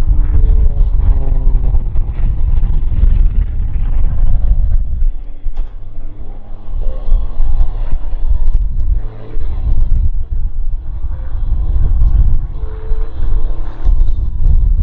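Extra 330SC aerobatic plane's six-cylinder Lycoming engine and propeller droning, the pitch sliding down over the first couple of seconds and shifting again through the manoeuvres. Heavy wind buffeting on the microphone is the loudest sound.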